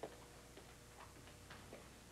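Near silence with faint, irregular light clicks and taps: glassware and crockery being handled on a table.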